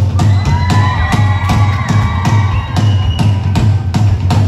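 Live band music: a steady drum beat over a strong bass, with a long held, slightly gliding note over it that fades out about three seconds in.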